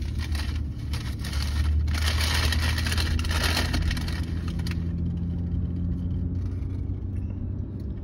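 Car running at low speed, heard from inside the cabin as a steady low hum. For the first half or so there is close rustling and crackling, which then stops, leaving the hum.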